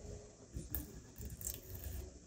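Faint scratching and a few small clicks as fingers pick and peel cardboard off the inner core of a tightly wound coil of PLA filament.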